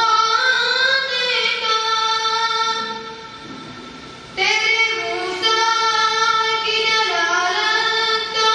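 A boy singing a hamd, a devotional poem in praise of God, solo into a microphone, with long held, wavering notes. His voice sinks low and quiet for about a second past the middle, then comes back strongly.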